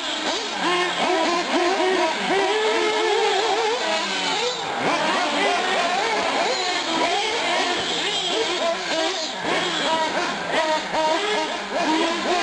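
Several 1/8-scale nitro R/C car engines revving up and down at high pitch around the track, their rising and falling whines overlapping.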